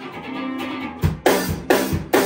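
A live band playing: sustained electric guitar notes, then the drum kit comes in about a second in with a steady beat of kick and snare hits.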